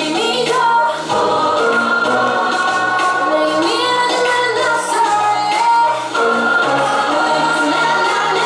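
K-pop-style dance track with a female singing voice over sustained low synth bass notes and chords.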